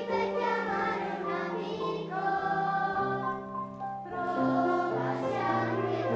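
Children's choir singing in unison with piano accompaniment.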